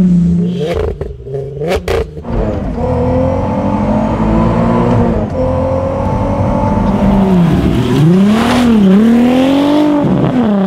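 Volkswagen Mk4 R32's VR6 engine revving as the car is driven, its pitch rising and falling, with a couple of sharp knocks about two seconds in. It settles to a steadier note in the middle, then the revs dip and climb twice near the end.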